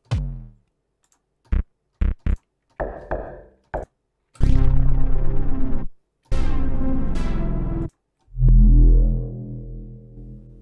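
Bass presets of the Martinic AX73 software synthesizer, an emulation of the 1980s Akai AX73, played on a keyboard: first a few short bass stabs, then three longer held notes. The first two held notes have a falling sweep in their upper tones, and the last one fades out slowly.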